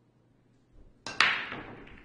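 Pool break shot: a light tick of the cue tip on the cue ball, then about a second in a loud sharp crack as the cue ball smashes into the racked balls, followed by their clattering as they scatter.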